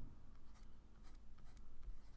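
Faint scratching and light taps of a pen tip writing by hand, with a low room hum beneath.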